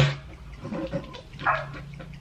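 A man laughing hard in short, yelping bursts: a loud one right at the start, then two shorter ones about a second in and a second and a half in.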